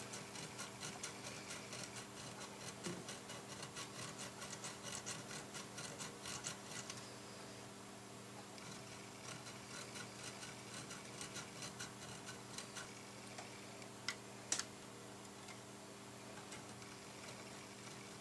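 A fine needle file rasping in light, quick strokes, about three or four a second, across the solder-coated legs of a SOIC chip on a circuit board. The strokes pause briefly about halfway, and two sharp ticks come near the end.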